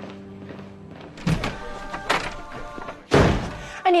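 Soft background music, then heavy smashing blows: two sharp thunks about a second apart and a louder, longer crash near the end.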